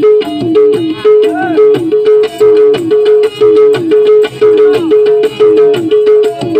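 Instrumental break in a Bangladeshi regional folk song played live: a tabla pair keeps a steady rhythm, the bass drum's note sliding down in pitch on many strokes. Over it runs a melody line with a few bending notes.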